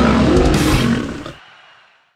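A lion's roar sound effect over the end of the music, starting loud and fading away over the second half.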